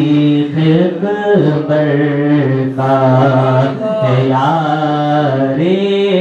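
A man singing an unaccompanied Urdu devotional poem (manqabat) into a microphone. He sustains long, ornamented notes that slide between pitches, phrase after phrase.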